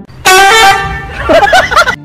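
A loud, horn-like honk held for about a second, then a short run of quick wavering, warbling tones before it cuts off.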